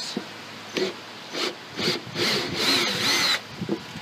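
Ridgid cordless drill/driver running in reverse with a Speedout screw-extractor bit, biting into a stripped screw and backing it out of a wooden block. It runs in a few short bursts, then for about a second near the end with a whine that rises and falls.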